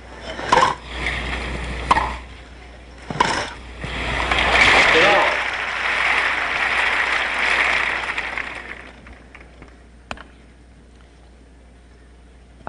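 Tennis rally: a racket strikes the ball three times with sharp pops about a second and a half apart. Then the crowd applauds for about five seconds and the applause dies away.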